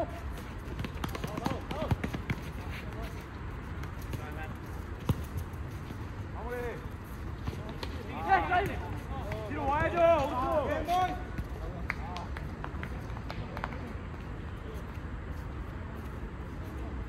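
Players' voices shouting and calling out during a futsal game, loudest about halfway through, with a few sharp knocks and running footfalls from play over steady low background noise.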